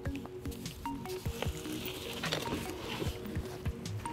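Background music with soft rustling, scraping and a few light knocks from the trunk's carpeted floor covering being lifted out, busiest about two to three seconds in.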